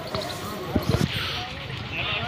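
Indistinct background voices over a steady murmur, with a few dull thumps about a second in.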